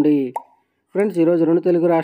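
A single short pop sound effect, like a button click, about a third of a second in, followed by a brief silence.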